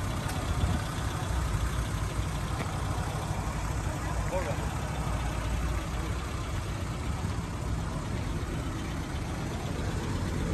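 Suzuki Jimny Sierra's 1.3-litre four-cylinder engine idling steadily.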